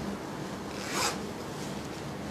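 A single brief rubbing swish about a second in, over a low steady hum.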